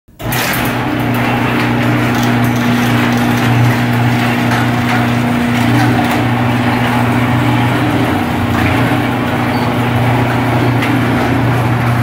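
Electric garage door opener running as a sectional garage door rolls up: a loud, steady motor hum over a rattling, clattering noise that cuts off suddenly at the end as the door reaches the top.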